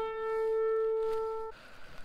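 A single note on a C. Bechstein grand piano, in the middle register, struck while being tuned. It rings with a clear, even tone and is damped sharply about a second and a half in.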